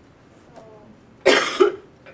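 A person coughing twice in quick succession, loud and close, about a second and a quarter in.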